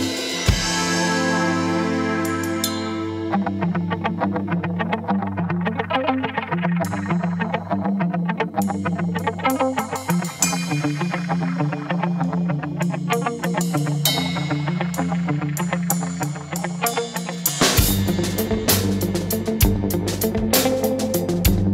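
Instrumental jazz-infused progressive rock playing: sustained chords open, then guitar plays a busy pattern over drums and cymbals from about three seconds in. The low end comes in heavier near the end.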